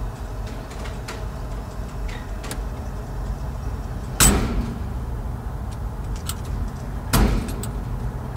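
Car idling, heard from inside the cabin: a steady low rumble, broken by two sharp thumps, one about four seconds in and one about seven seconds in.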